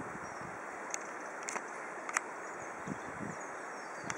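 Steady outdoor hiss with a few faint, sharp clicks about one, one and a half and two seconds in, and soft low bumps a little before the end.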